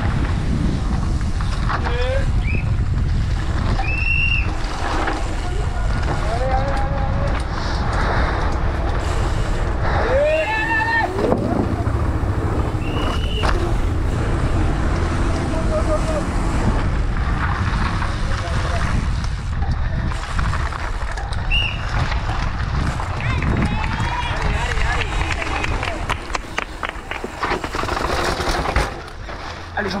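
A Commençal Meta SX mountain bike racing downhill at speed: wind rushing hard over the camera's microphone with tyre roar and chain and frame rattle, sharper clacks and rattles near the end. Spectators along the course shout encouragement every few seconds.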